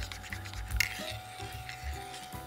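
A spoon stirring coffee in a ceramic mug, scraping and clinking against the side a few times, over quiet background music.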